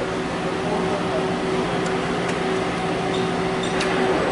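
Industrial robot arm's servo drives humming steadily as the arm is jogged toward a taught point, with a few faint clicks.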